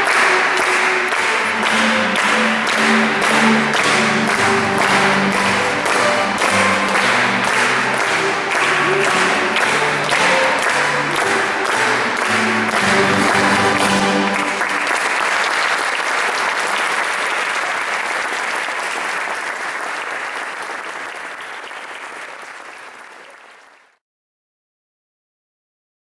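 An ensemble of violas da terra and guitars strumming and plucking the closing bars of a tune, with the notes stopping about fourteen seconds in. Audience applause carries on after the music ends and fades out near the end.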